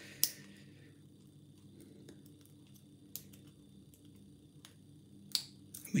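Faint, sparse metallic clicks of a pick and Z-bar tension wrench working inside the cylinder of a heavy Prefer container shutter lock as it is being picked: a handful of single ticks a second or more apart, two of them close together near the end.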